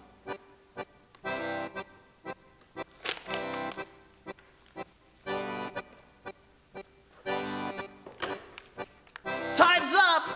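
Accordion music playing a bouncy pattern: short staccato notes alternating with held chords about every two seconds. A person's voice cuts in loudly near the end.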